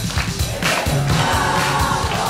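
A boy singing into a microphone over a pop backing track with a steady drum beat and backing voices.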